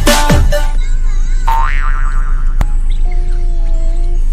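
Electronic dance music that stops within the first second, followed by edited-in cartoon sound effects: a springy boing with a wobbling pitch, a single sharp click, and a short steady tone near the end.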